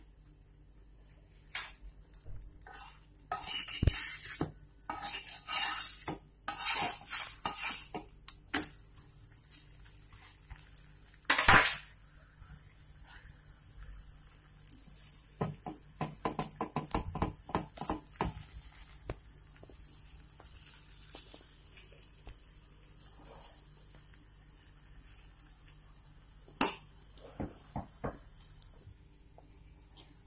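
A steel spoon scraping and clinking against a paratha on an iron tawa as ghee is spread over it. The strokes come in irregular bursts with quiet gaps, and there is one louder clank about eleven seconds in.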